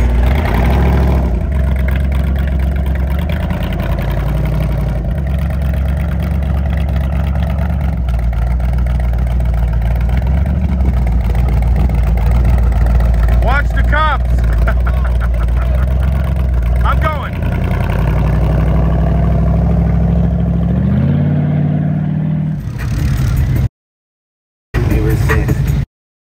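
Lifted mud-bogging Jeep's engine running and pulling away at low speed: a loud, deep drone that shifts in pitch a few times and rises near the end as it revs. Voices call out briefly in the middle.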